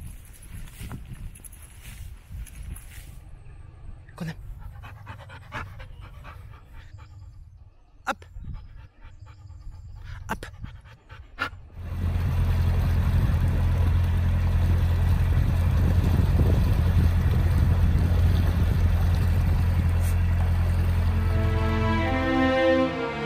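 Dog moving through long grass with panting and rustling and a few sharp clicks. About halfway through, a much louder steady rumbling noise takes over.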